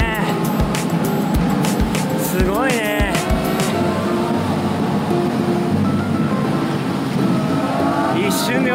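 Voices and singing echoing in a sea cave: held sung notes, with a rising-and-falling call about three seconds in. Irregular low knocks sound through the first half.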